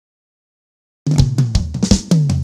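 Silence, then about a second in a norteño band's drum kit bursts in with a quick fill of six or seven snare and drum hits over low bass notes, opening the song.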